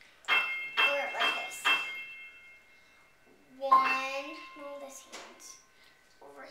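Grand piano: four notes struck about half a second apart, ringing on and fading away. A short voice sound follows near the middle, and then another softer note.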